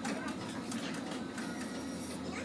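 Skill machine running a free bonus spin: a rapid run of short clicks from the reel-spin sound effects over a steady low hum, with faint voices in the room.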